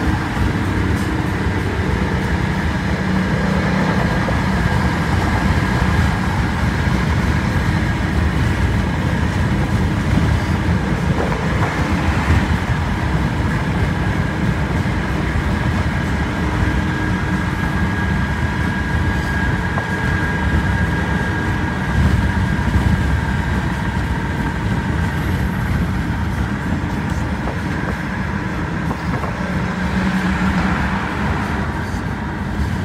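Steady road and engine noise inside a moving car at highway speed: a continuous low rumble with a faint high steady whine over it.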